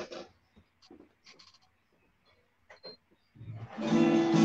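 A few faint clicks, then near the end an acoustic guitar chord is strummed and rings.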